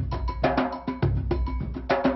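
Percussion music: drumming in a fast, steady, repeating rhythm.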